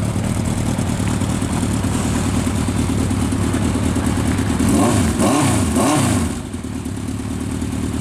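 Honda CB750F Integra's air-cooled inline-four engine idling, then blipped three times about five seconds in, each rev rising and falling quickly before it settles back to idle.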